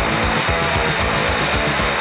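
Fast, loud hardcore punk recording: distorted electric guitar, bass and drums, with a cymbal struck about five times a second over a driving kick drum.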